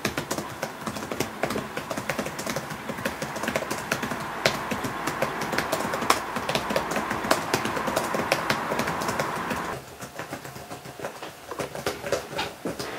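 Typing on a computer keyboard: a quick, irregular run of key clicks over a steady background hum, which cuts off about ten seconds in.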